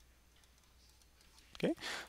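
Very quiet, with a few faint clicks of a stylus tapping on a drawing tablet while handwriting.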